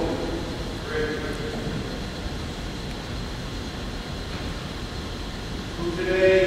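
Distant, echoing voice of the officiant at the altar, heard briefly about a second in, over a steady low rumble of room and recording noise.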